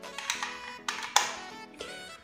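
Soft background music, with two sharp clicks about a second in from a 6.35 mm jack plug being pushed into the sound card's dynamic-mic socket.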